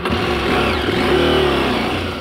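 KTM 890 Adventure's parallel-twin engine pulling along a dirt trail, its pitch rising as it accelerates and then easing off past the middle.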